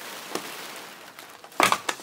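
Plastic sheeting from foam-insulation wrappers rustling and crinkling as it is pulled off a damp stucco wall and bunched up, with a few loud crackles near the end.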